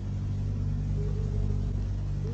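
Steady low hum and rumble of the recording's background noise, with a faint higher tone coming and going.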